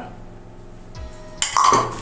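Glass bowl clattering against a stainless-steel spice grinder jar as ground ginger is tipped in. The clatter starts suddenly about one and a half seconds in, after a soft thump.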